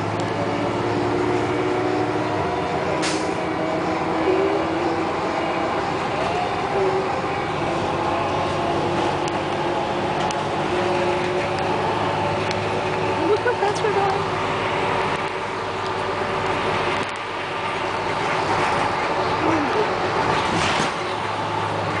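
Bus engine running and road noise heard from inside the moving bus, a steady hum with a couple of sharp rattles.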